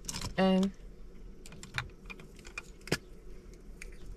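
Small clicks and taps of cosmetic items being handled in a makeup bag, with one sharper click about three seconds in.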